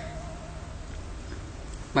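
A held, wavering note of background music ends at the very start, leaving a faint low hum and hiss.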